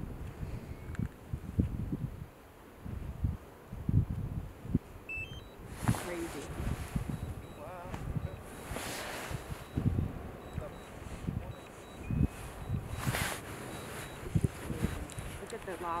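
Erupting lava fountain at the Fagradalsfjall volcano: irregular low rumbling surges and thumps, with louder gushing bursts about six, nine and thirteen seconds in. People's voices are nearby.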